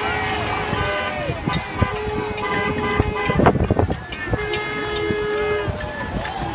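Passing cars sounding their horns in several long blasts, each about a second or more, with people shouting and cheering in between.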